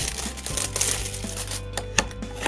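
Cellophane shrink-wrap crinkling and crackling as it is peeled off a small cardboard toy box, over quiet background music.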